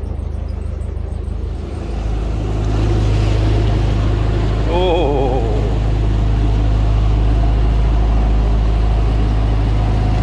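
Narrowboat's inboard diesel engine running, opened up about two seconds in and then holding steady at higher revs as the boat gets under way.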